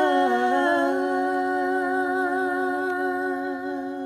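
Two women's voices singing in harmony, holding one long closing note that slowly grows quieter.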